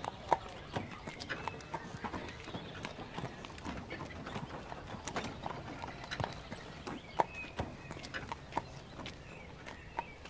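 Horse hooves clip-clopping at an uneven pace as a horse draws a wooden cart along a dirt road.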